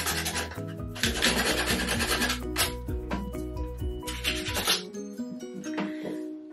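Hand sanding with 80-grit sandpaper on the chipped finish of a clawfoot bathtub: rough rubbing strokes in several bursts, the longest in the first two and a half seconds and a short last one about four seconds in. Background music plays underneath.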